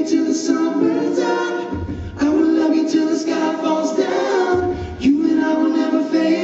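All-male a cappella group singing live through microphones: voices only, holding close-harmony chords in phrases, with a low bass note leading into a new phrase about two seconds in and again about five seconds in.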